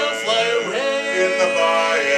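Barbershop quartet of four men singing a cappella in close harmony, holding sustained chords that glide to a new chord about two-thirds of a second in.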